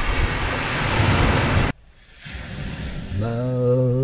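A steady rushing noise, like wind, cuts off suddenly under two seconds in. After a short near-silence, a man starts singing, holding one low note near the end.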